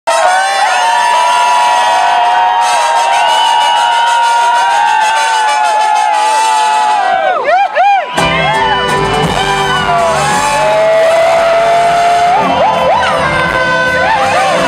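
Live band music: two trumpets play a bending melody with no low end under it, and about eight seconds in the full band comes in with bass, guitar and drums.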